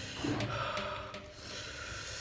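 Quiet breathing and mouth sounds of a man chewing, with a few faint clicks over a low room hum.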